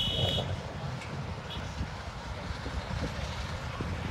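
Outdoor background noise: a low, steady rumble of wind on the microphone and distant road traffic, with one brief high chirp right at the start.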